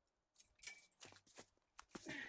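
Near silence broken by about five faint, short crunching clicks, spread across a second and a half.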